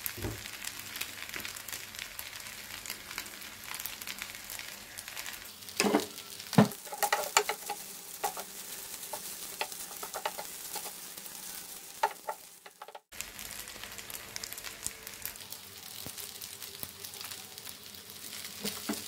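Fried rice sizzling in a non-stick frying pan as it is stirred and turned with a wooden spatula. The spatula knocks against the pan, loudest about six to seven seconds in and again near twelve seconds.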